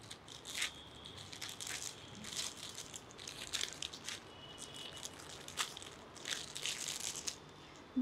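Shiny plastic gift wrapping crinkling and rustling in the hands as a gift is unwrapped, in irregular crackly bursts that die down shortly before the end.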